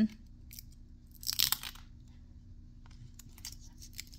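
Quiet handling noise from a hand-carved wooden figurine being turned over on a tabletop: a brief rustling scrape about a second in, with a few light clicks.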